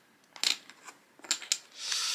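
Thin laser-cut wooden puzzle pieces clicking against each other and the wooden frame as they are moved and pressed into place: a few light, sharp clicks.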